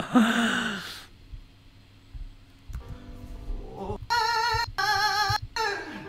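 A breathy exhale trailing off a laugh, then after a quiet stretch a singer in the played cover holds a high note with vibrato, broken into short phrases near the end.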